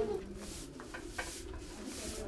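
A soft grass broom sweeping a concrete floor, a few brushing strokes of bristles scraping across the surface.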